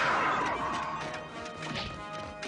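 Cartoon action score with sound effects. A loud crash at the start is followed by a falling sweep, then further scattered hits while the music carries on.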